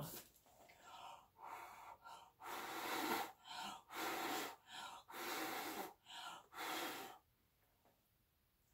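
A person blowing by mouth onto wet acrylic paint to push it outward across the panel (Dutch pour technique): about ten short, breathy blows and breaths in quick succession, which stop about a second before the end.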